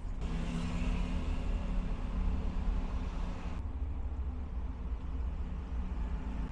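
Steady low rumble of road traffic with a vehicle engine humming. A fainter hiss above it cuts off abruptly a little past halfway.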